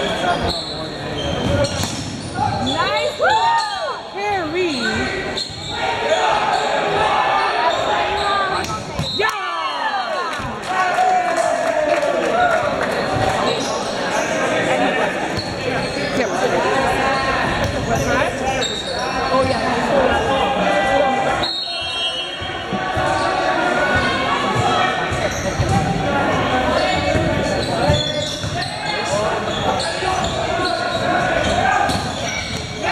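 Volleyball being played on a gymnasium court: the ball being struck and sneakers squeaking on the hardwood floor, with players and spectators talking, all echoing in the large hall. A few high squeaks rise and fall a few seconds in and again around ten seconds in.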